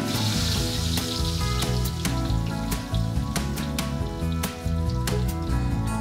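Leaves sizzling as they go into hot oil in a wok, the sizzle strongest in roughly the first second and a half, under background music with a steady beat.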